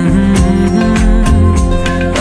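Bollywood pop song playing: a male voice humming over guitar and a steady drum beat.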